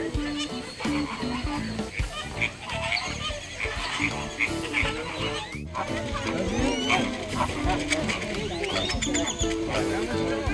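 A flock of flamingos calling, with many short nasal calls that grow denser and overlapping in the second half. Background music with held, repeating notes runs underneath.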